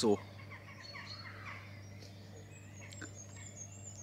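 Faint bird calls over a steady low hum: a few short calls early on, then a thin, high, warbling song in the second half.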